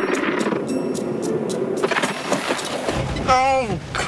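Car engine and tyres as a red fifth-generation Honda Prelude drives along at speed pushing a puck, a steady, fairly noisy sound, with a man's voice coming in near the end.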